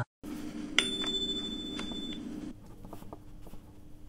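A single high electronic beep from a laptop speaker, starting about a second in with a click and held for just over a second over a low playback hum that cuts off soon after. This is the exam recording's cue that the segment has ended and the candidate should begin interpreting. Faint room tone with light ticks follows.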